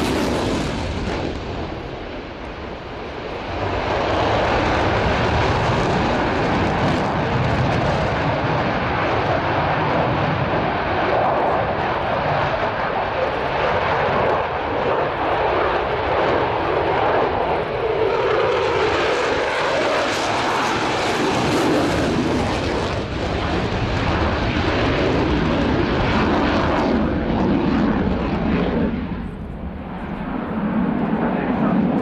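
Eurofighter Typhoon's twin Eurojet EJ200 turbofan engines running at high power with afterburners lit as the jet turns, a loud continuous jet noise. It dips briefly about two seconds in and again near the end.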